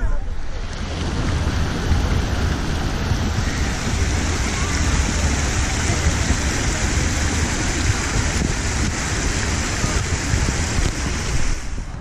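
Rows of small fountain jets spraying into a shallow pool: a steady hiss of splashing water. It grows louder a few seconds in and cuts off suddenly just before the end.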